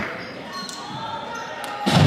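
Gymnasium crowd chatter with a basketball bouncing on the hardwood floor, a couple of short knocks about a second apart.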